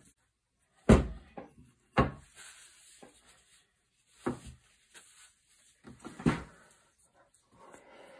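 Knocks and bumps of a shotgun's wooden stock and action being set down and handled on a wooden table: four separate knocks about a second or two apart, with faint handling rustle between them.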